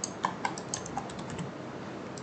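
Computer keyboard and mouse clicking: a quick run of about a dozen light clicks that stops about a second and a half in.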